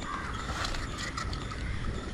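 Spinning reel being cranked to retrieve line, its gears giving a steady, even whir.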